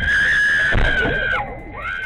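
A woman screaming in distress as her car is attacked: one long, high, held scream that breaks off about a second and a half in, and a second scream starting near the end, over low rumbling noise inside the car.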